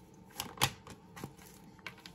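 Tarot cards being shuffled and drawn: a few faint, sharp clicks of card against card at uneven intervals.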